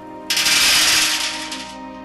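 A rapid stream of metal BBs rattling against a tin can, a dense burst of pings lasting about a second and a half; each BB stands for 10,000 war dead. Soft background music plays underneath.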